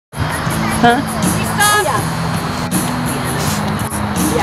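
A voice saying "Huh?" and a brief high-pitched voiced sound over background music with a steady low drone.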